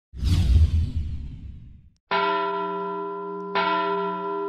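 Logo intro sound effect: a deep rushing whoosh that fades out over about two seconds, then two bell strikes about a second and a half apart, each ringing on with many sustained tones.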